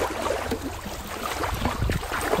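A hand splashing in shallow water, a run of irregular splashes and sloshes as it reaches in and grabs a small toy from the bottom.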